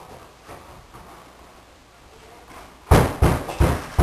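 Faint room noise, then about three seconds in a quick series of loud thumps, roughly three a second.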